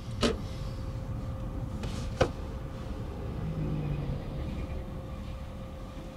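Cabin noise of a Toyota Crown sedan being driven slowly: a steady low rumble of engine and tyres. Two sharp clicks stand out, one just after the start and one about two seconds in.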